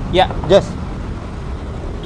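A man's two short words, then a steady low background rumble with no distinct events.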